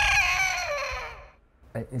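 Rooster crowing sound effect: the end of one long crow, wavering and then falling in pitch as it fades out.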